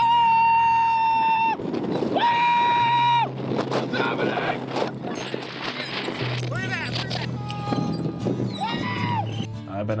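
Excited storm chasers yelling with trailer music underneath: two long, loud held yells in the first three seconds, then shorter rising-and-falling shouts later on.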